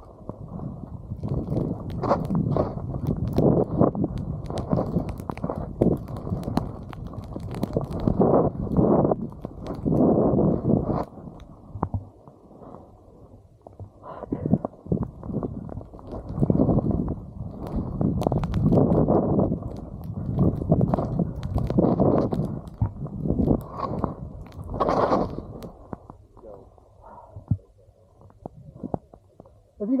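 Skis sliding and turning through deep powder snow, a rough rushing noise that swells and fades with each turn, mixed with wind buffeting the camera microphone. It eases off for a stretch in the middle and again near the end.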